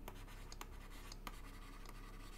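Faint scratching and light taps of a stylus writing words by hand on a drawing tablet.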